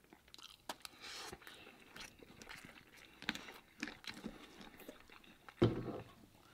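Close-miked chewing and crunching of crispy fried food, with small clicks and crackles throughout and a louder thump a little before the end.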